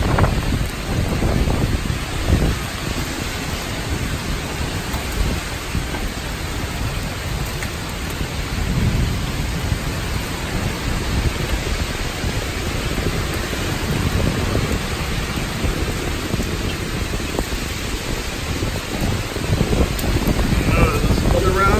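Heavy rain and strong downburst winds, a steady rush of noise with low, shifting rumbling from gusts buffeting the phone's microphone.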